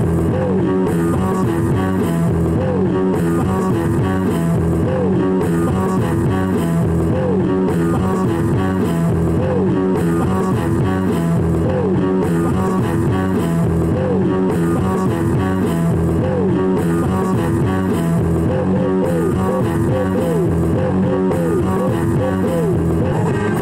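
Rock music with guitar and bass over a steady, regular beat; the guitar repeatedly bends notes up and back down.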